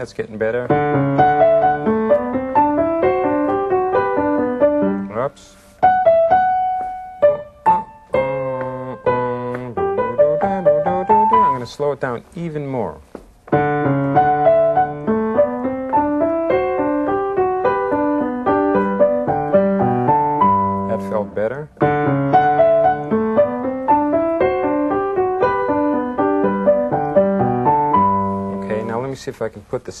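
A keyboard plays a short practice passage again and again, about four times, with a brief stop before each new try.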